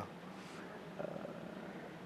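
Faint room noise in a pause between a man's spoken sentences, with a slight brief sound about a second in.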